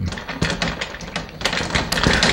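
Dry-erase marker writing on a whiteboard: a quick, irregular run of short taps and scratches as the strokes of Korean letters go down.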